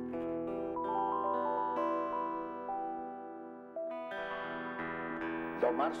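Live electro-folk instrumental passage: held synthesizer chords with a slow stepping melody over them and electric guitar, changing to a new chord about four seconds in. A man's singing voice comes in near the end.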